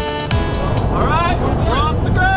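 Electronic music with a steady kick beat stops about half a second in. A small jump plane's engine and airflow noise then fills the cabin steadily, with people's voices over it.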